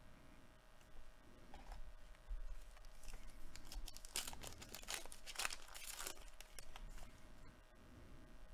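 Baseball trading cards being handled and flipped through by hand: a run of quick, scratchy rustles of card stock and wrapper, busiest from about three to six seconds in.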